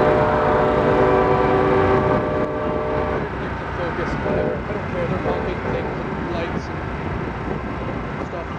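Distant choir or music carrying across the water, holding sustained chords that change in steps and die away about three seconds in, over a continuous low rumble.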